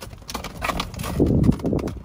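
An Akita dog's paws stepping and shifting on a padded fabric dog bed: fabric rustling with soft thumps, loudest just after the middle.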